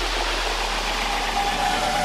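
Electronic dance music in a beatless breakdown: a steady deep bass drone under a noisy synth wash, with no drums.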